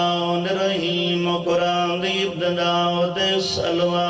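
A man's amplified voice chanting in long, held melodic notes, with brief breaks between phrases.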